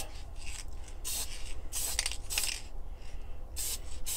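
Aerosol spray can of Testers lacquer paint hissing in about five or six short bursts: a light first mist coat, meant as something for the later coats to bite to.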